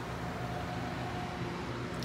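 Steady low mechanical hum with an even hiss and a faint higher whine, unchanging throughout.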